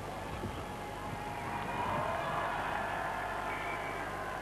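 Crowd of spectators in a stadium: a low, steady din of many distant voices, swelling slightly about halfway through.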